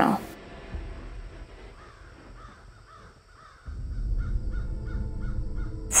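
A bird calling repeatedly in short, harsh calls, over a low rumble that grows louder a little past halfway through.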